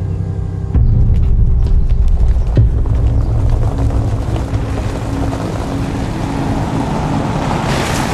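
Low rumble of a Ford SUV's engine and tyres as it drives up. It comes in suddenly about a second in, under a few held music notes.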